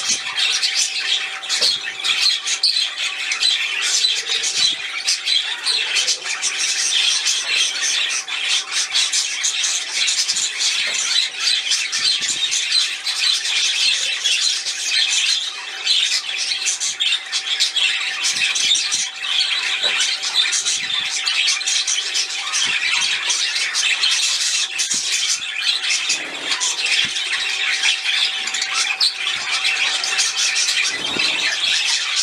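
Aviary birds chattering and squawking without pause, over the steady splash of a small bird fountain's pump-driven jet, in which a canary is bathing.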